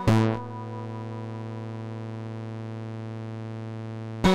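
Eurorack modular synthesizer: a last short note or two, then the sequenced pattern drops away and leaves one steady, low, buzzy drone note held without change for over three seconds.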